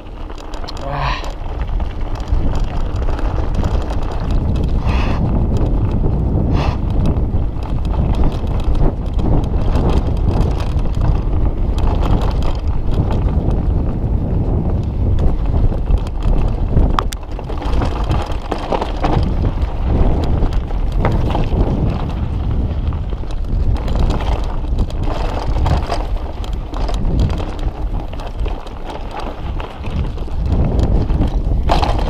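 Mountain bike riding down a dirt trail: tyres rolling over dirt and stones and the bike rattling over bumps, under a steady rumble of wind on the action camera's microphone.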